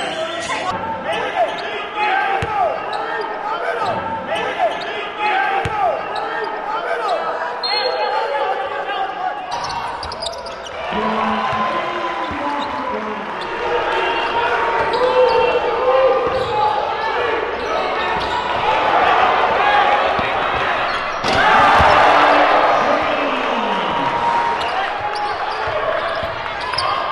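Gym game sound from a basketball game: crowd voices and shouts with a basketball bouncing on a hardwood court, and a louder crowd cheer a little before the end.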